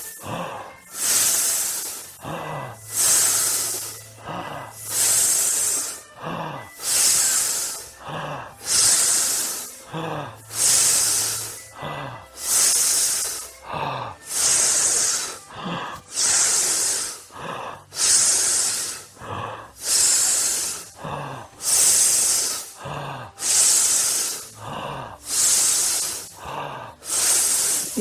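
People forcefully exhaling a hissed 'sss' sound through the teeth, over and over in a steady rhythm, as a group breathing exercise.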